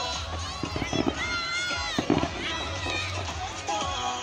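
Fireworks display heard through a crowd's voices and music over loudspeakers, with a couple of sharp pops about one and two seconds in.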